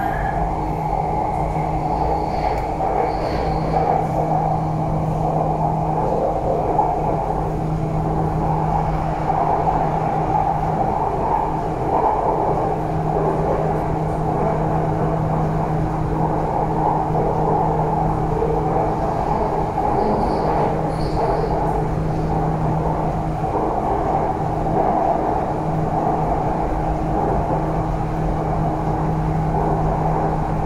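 Bangkok MRT metro train running along its elevated viaduct, heard from inside the carriage: a steady rumble of the train in motion with a constant low hum.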